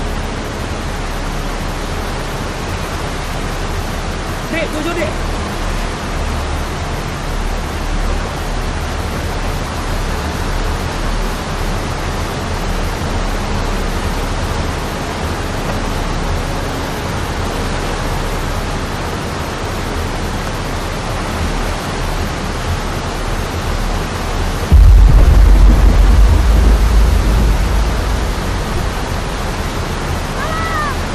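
Heavy rain as a steady hiss. About twenty-five seconds in, a sudden loud, deep rumble begins and slowly fades.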